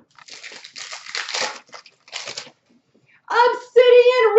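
Hockey cards and plastic card holders being handled: a longer rustling, sliding burst followed by a shorter one a second or so later.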